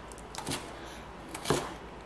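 Knife slicing bird's-eye chillies on a cutting board: two short cuts, about half a second and a second and a half in, with a few lighter ticks.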